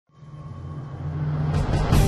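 Opening title music: a low sustained drone fading in from silence and swelling steadily, with a quick rush of swishes near the end.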